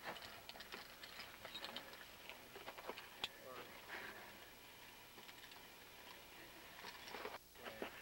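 Faint crunching of boots in snow and light clicks of climbing hardware being handled, with one sharper click a few seconds in.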